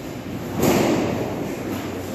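A single loud bang or slam about half a second in, dying away over about a second with an echo in a large, hard-walled hall.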